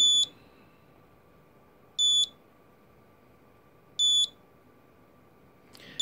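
Canberra handheld radiation meter sounding short, high beeps, one about every two seconds, while measuring a radium-painted compass.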